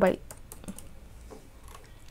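Computer keyboard typing: a few quiet, irregularly spaced keystrokes as a word is typed.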